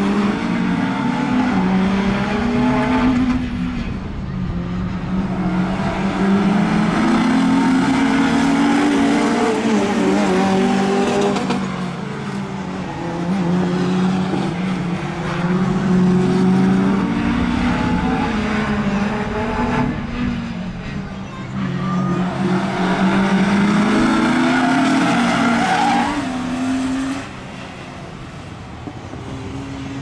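Several road-going saloon race car engines revving hard and easing off in waves every few seconds as the cars lap a short oval, with tyre squeal in the corners. The sound drops off near the end.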